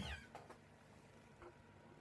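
A short high-pitched call falling in pitch and fading out within the first half-second, then near silence with a few faint clicks.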